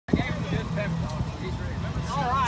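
Honda Gold Wing motorcycle engine idling with a steady low hum, with people talking over it.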